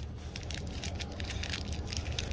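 Plastic wrapper of a sausage dog treat crinkling and tearing as it is peeled open, a quick run of small crackles over a low steady hum.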